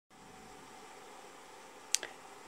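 Faint steady hiss of room tone, with one sharp click near the end.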